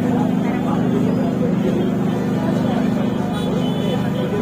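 A vehicle engine idling steadily, a low even drone, with people talking in the background.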